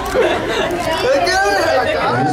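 Several people talking over one another: indistinct crowd chatter in a large hall.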